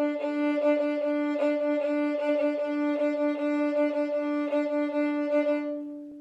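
Violin played with an old-time shuffle bowing: the same note is bowed over and over in a short, driving rhythm of quick bow changes, stopping at the end.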